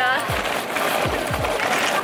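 Suitcase wheels rolling on pavement, a steady rumbling rush, under background music with a steady beat.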